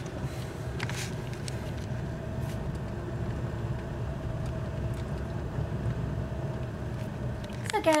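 Steady low rumble of a car's engine and tyres heard inside the cabin while driving on a freeway in slow traffic.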